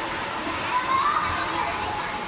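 Hubbub of many children's voices chattering and calling out on an indoor ice rink, with one voice rising briefly a little under a second in.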